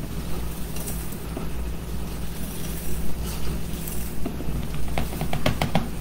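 Coarsely ground coffee poured and tapped from a small plastic cup into a wire mesh cold-brew core: a faint rustle, with a run of light clicks near the end, over a steady low hum.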